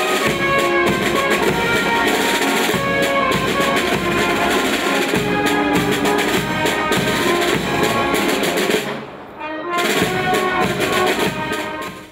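Military band music with brass and drums, dipping briefly about nine seconds in.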